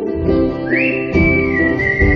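A whistled melody over ukulele and acoustic guitar chords. The whistle enters a little under a second in with an upward slide into one long held note that eases slightly lower.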